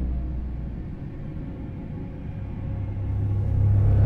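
Low, dark rumbling drone of a horror-style intro soundtrack. It fades down through the middle and then builds again, and a rising hissing swell begins near the end.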